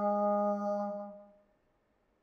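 A Buddhist monk's chanting voice holding one long, steady note at the end of a chanted blessing line, fading out about a second and a half in.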